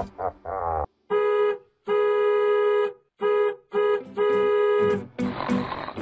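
A brief laugh, then an electronic organ-like keyboard tone played on one steady pitch as five notes of uneven length with short gaps between them. A rushing noise follows near the end.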